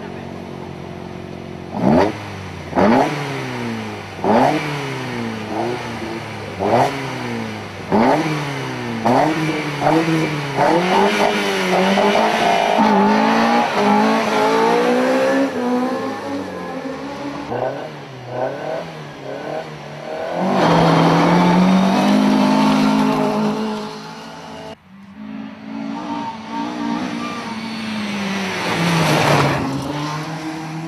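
Rally car engines: one engine revved in sharp blips about once a second, its pitch falling after each, then climbing steadily. Later a car passes loudly, and another near the end.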